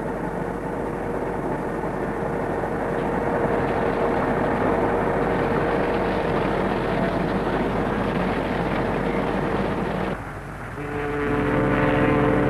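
Steady machinery noise with a constant hum as a ship loader pours copper concentrate down its chute into a ship's hold. About ten seconds in the noise drops away, and a steady, deep, many-toned drone begins.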